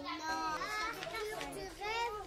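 Young children talking among themselves, several high-pitched voices overlapping.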